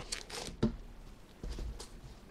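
Handling noise from a paper fries container being picked up and held: soft rustles and a light knock about a third of the way in.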